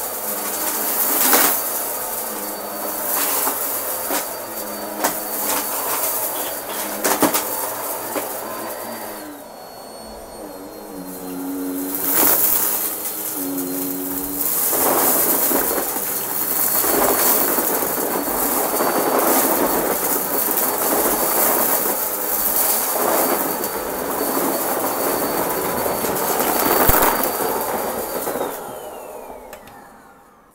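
Upright vacuum cleaner running with a steady high whine, pushed back and forth over a rug. Each stroke brings a swell of rushing air and crunching as debris is sucked up, about every two seconds. Near the end the motor is switched off and its whine falls away.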